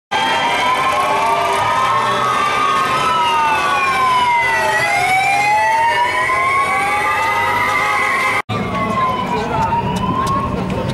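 Police motorcycle sirens wailing, two or more overlapping wails sliding slowly up and down in pitch. The sound drops out suddenly about eight and a half seconds in, then the wailing goes on fainter.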